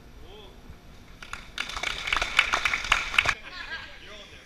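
An audience applauding: a few scattered claps just over a second in, quickly building into full applause that cuts off suddenly a little after three seconds.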